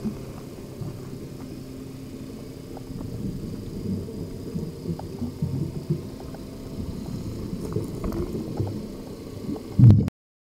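Underwater camera sound: a low, irregular rumbling of moving water with a few faint ticks, and a louder thump just before the end.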